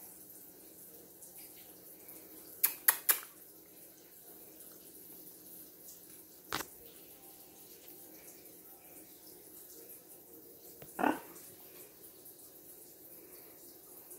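Sharp clicks and taps from a blue-and-gold macaw moving on a wooden tabletop: three quick clicks about three seconds in and one more about halfway, otherwise a quiet room.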